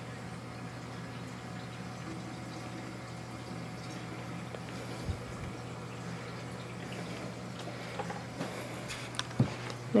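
Reef aquarium's low, steady hum with faint trickling water, its return pump and wave makers switched off. A single soft knock comes about halfway through.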